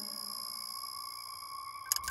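Sustained high-pitched electronic tones, held steady like a ringing drone, with a lower tone that fades out in the first second. A few short clicks come near the end.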